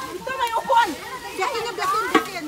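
Several people's voices chattering and calling over one another at once, with no single clear speaker.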